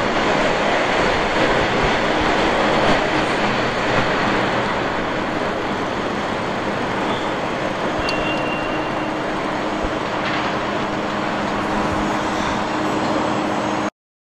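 Steady rushing, rumbling noise of riding a bicycle over brick paving: wind and tyre noise on the bike-mounted camera's microphone.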